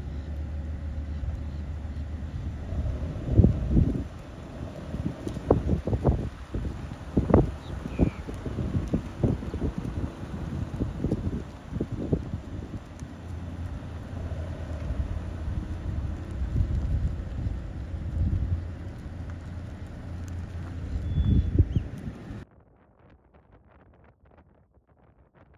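Wind buffeting the microphone: a low rumble with irregular sudden gusty thumps, which drops away abruptly near the end.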